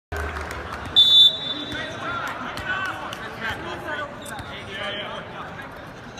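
A short, loud referee's whistle blast about a second in, the signal for the serve at a volleyball match. Voices carry around the arena, with scattered sharp knocks.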